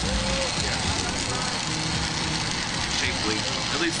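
Glassblowing bench torch burning with a steady hiss while a pipe is worked in the flame.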